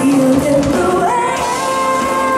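Live pop band with a female lead singer; about a second in, her voice slides up into a long, high held note.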